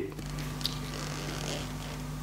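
A steady low hum with a faint hiss behind it, and one brief faint rustle a little over half a second in.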